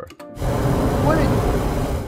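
Recorded flamethrower sound effect played back from a sample library: a short, loud rush of flame noise that starts about a third of a second in and cuts off near the end.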